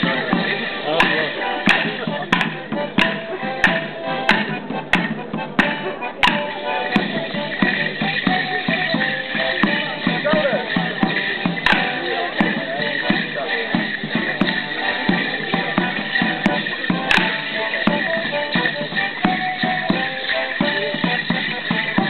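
Morris stick dance: a squeezebox plays a lively dance tune with a drum, while the dancers' wooden sticks clack together in sharp strikes, about two a second through the first six seconds, then single clashes a few times later.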